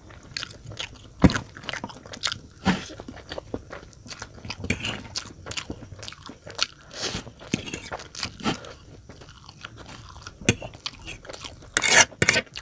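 Close-miked chewing of a mouthful of Maggi instant noodles: irregular wet smacks and crunchy bites, with a few sharper crunches about a second in, near three seconds and near the end. A metal fork scrapes the tray right at the end.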